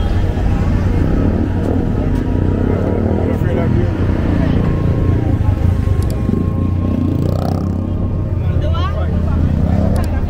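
Busy town-street ambience: people's voices, with music playing and vehicles running under a steady low rumble.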